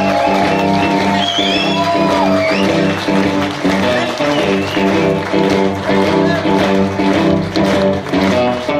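Blues band playing live, an electric guitar out front over the band's steady groove.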